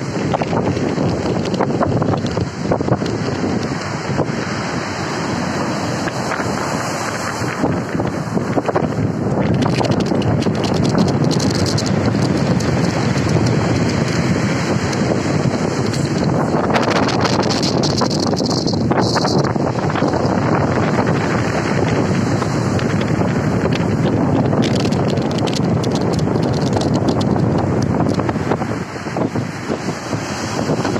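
Stormy sea surf breaking and washing over the shore in a loud, continuous roar, with heavy wind noise on the microphone.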